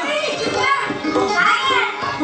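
Voices of jatra stage actors talking loudly in high, swooping, exaggerated tones, with music faintly underneath.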